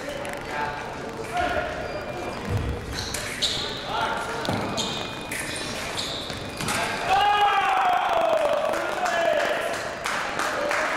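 Foil fencers' footwork thudding on the piste in a large hall, with scattered short sharp sounds. About seven seconds in comes the loudest sound: a long shout sliding down in pitch, a fencer's yell on a scored touch.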